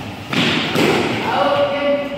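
A sudden thump on a badminton court about a third of a second in, followed by a player's raised voice calling out near the end.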